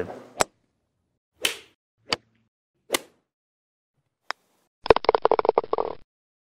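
Edited sound effects for a logo intro: a sharp click, then three short hits about a second apart, a faint tick, and near the end a quick rattling run of taps lasting about a second, with dead silence between them.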